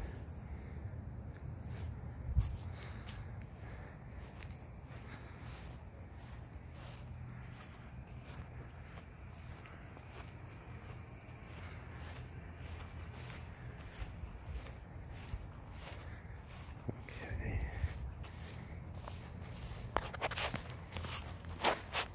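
Insects trilling steadily at a high pitch with an even, rapid pulse, with soft footsteps on grass.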